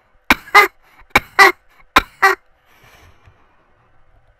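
A man laughing in short bursts, three quick pairs of 'ha-ha' over the first two and a half seconds, a mocking imitation of another man's laugh.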